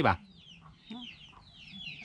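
Chickens cheeping faintly: a run of many short, high chirps, each falling in pitch, several a second.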